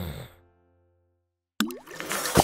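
The end of a voice's falling 'mm' over background music fades out within half a second. After a moment of silence, a short cartoon-style sound effect with a quick rising pitch starts near the end, opening the animated logo.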